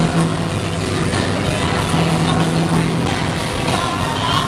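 Live rock band playing loud through a theatre PA, heard from within the audience: dense bass and drums with a held low bass note, the sound muddy and crowded.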